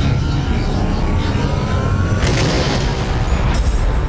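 Film-trailer sound design: heavy low rumbling booms under music. A thin whine rises in pitch over the first two seconds, then cuts off at a sharp hit.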